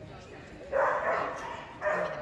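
A dog barking twice, loud and echoing in a large hall: one bark about three-quarters of a second in and another near the end.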